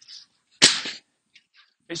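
Southern broadsword (nandao) swished through the air in one fast cut: a single sharp swish, about half a second in, that fades within half a second.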